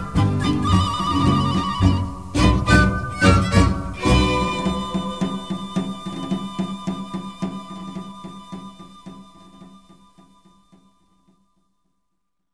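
Closing bars of a mariachi ranchera song, with violins and guitars. A few accented final chords are followed by a last chord held with vibrato and steady strumming, which fades away near the end.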